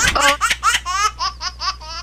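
High-pitched laughter: a quick run of short, repeated syllables, speeding up to about seven a second in the second half.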